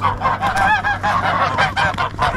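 A flock of domestic geese honking all at once, many short calls overlapping into a continuous loud clamour.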